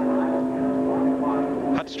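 NASCAR Winston Cup stock car's V8 engine running at one steady pitch on a qualifying lap. It drops away about two seconds in.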